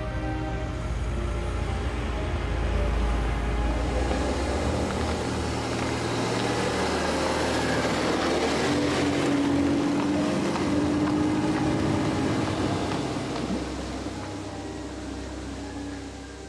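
A car driving past on a road, its engine and tyre noise swelling to a peak about two-thirds of the way through and then fading, over soft background music.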